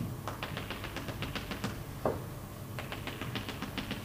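Chalk tapping on a blackboard in quick runs of short, sharp taps as a row of small dashes is drawn along a plot axis: about a dozen taps in the first second and a half, then another run of taps after a brief pause.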